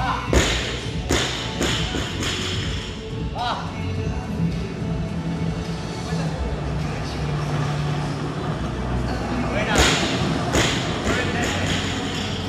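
Loaded barbell with bumper plates dropped from overhead onto the rubber gym floor, landing with a heavy thud and bouncing, less than a second in. Another loud thud comes near the end, all over background music.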